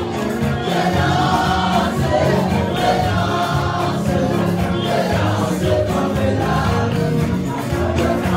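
Gospel worship song: a choir singing with instrumental backing, continuing steadily.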